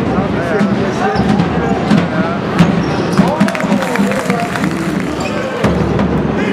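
A basketball bouncing on the court, with repeated sharp knocks, amid indistinct voices during a game.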